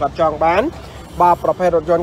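A person talking rapidly and continuously, with one short pause a little before the middle: speech only.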